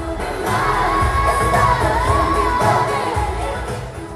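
Female pop group singing live over a backing band in an arena, one voice holding a long, wavering note, with crowd noise underneath.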